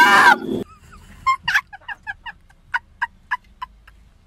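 A teenage girl's shrill scream trailing off about half a second in, then a string of short, high-pitched bursts of laughter, about four a second.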